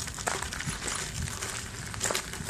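Soft footsteps on a concrete path, heard as a few faint scattered clicks over a steady low outdoor rumble.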